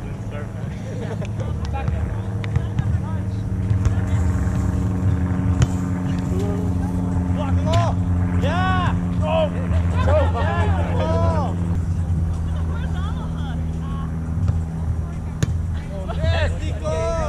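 A motor engine running steadily, its low hum shifting slightly about three quarters of the way through, with voices calling out over it.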